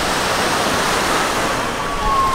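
Small Gulf of Mexico surf washing onto the sand, a steady loud rush, with faint distant voices over it near the end.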